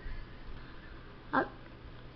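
A dog gives one brief, high-pitched cry about one and a half seconds in, over a low background hum.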